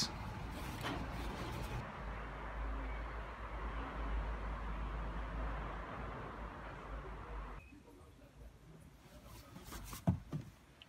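Engine oil poured from a large plastic bottle into an engine's oil filler neck: a steady rushing pour that drops away suddenly about three-quarters of the way through.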